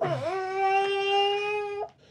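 A baby crying: one long wail that dips, then holds a steady pitch and breaks off suddenly near the end.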